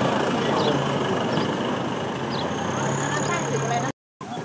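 Several people talking in the background over a vehicle engine idling steadily. All sound cuts out abruptly just before the end.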